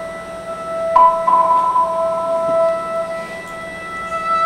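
Music of steady, held pure tones at several pitches. A higher tone enters sharply about a second in and drops out a little past the middle.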